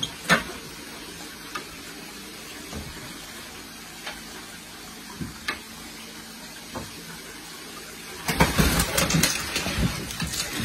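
Aquarium water sloshing and splashing as a man wades in the tank trying to net a tarpon, with scattered small splashes. About eight seconds in there is a burst of loud, continuous splashing as the fish is caught in the net.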